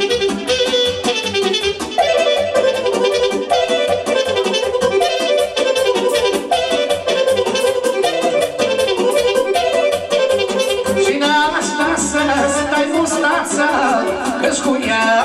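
Amplified instrumental Romanian folk dance music with a fast, steady beat, played for a line dance.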